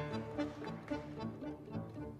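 Live tango ensemble of piano, bandoneón, double bass and violins playing the instrumental introduction to a tango in a marked, accented rhythm, before the vocal comes in.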